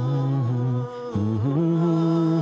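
Unaccompanied, wordless humming of a slow melody, in a low male voice. Held notes step down in pitch, break off briefly about a second in, then rise to a higher held note.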